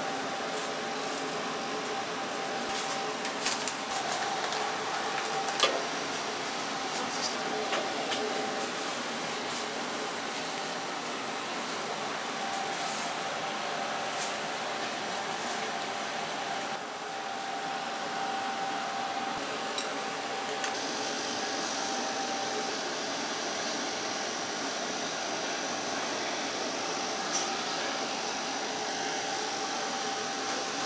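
Steady rushing noise of commercial kitchen equipment, with a constant hum and a thin high whine under it. A few sharp metal clinks come in the first six seconds.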